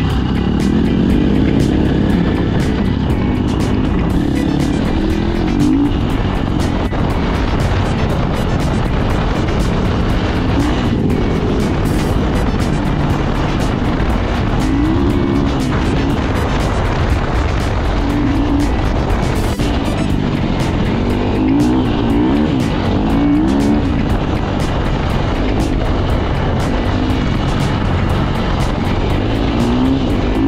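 Dirt bike engine running under load on a rough trail, its pitch rising and falling again and again as the rider works the throttle.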